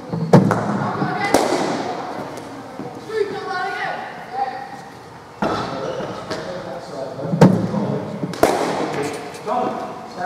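A cricket ball being bowled and played in an indoor net: five sharp knocks of ball on bat, mat or netting, echoing in a large hall. Two of them come in pairs about a second apart, one pair near the start and one near the end.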